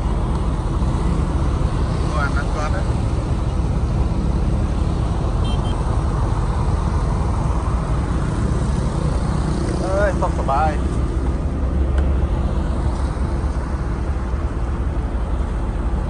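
Steady road-traffic noise from motorbikes and cars passing on a country road, a constant low rumble, with short snatches of voices about two seconds in and again about ten seconds in.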